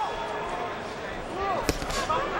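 Boxing arena crowd noise: a steady hum of voices with scattered shouts, and one sharp smack near the end.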